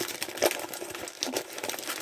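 Gift wrapping crinkling and rustling in the hands as a present is unwrapped, with irregular crackles throughout.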